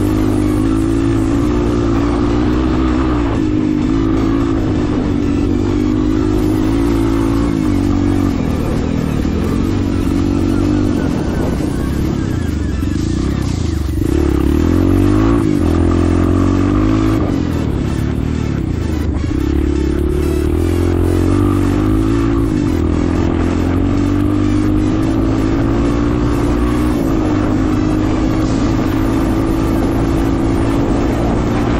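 Dirt bike engine running under throttle while riding at speed on a dirt track. Its note dips and climbs again several times as the rider eases off and opens the throttle.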